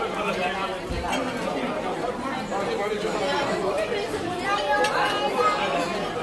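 Chatter of many diners talking at once in a busy restaurant dining room, with a few light clinks of cutlery on plates.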